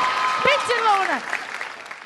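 Studio audience applauding, with a steady held tone under it. About half a second in, a voice-like pitched sound slides downward, and the applause dies away near the end.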